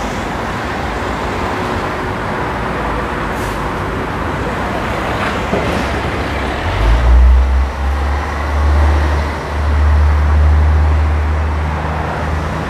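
Steady road traffic noise from a main road, joined about seven seconds in by a deep, loud engine rumble from a heavy vehicle that lasts to the end.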